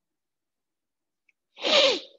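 A person sneezing once, a short loud burst near the end.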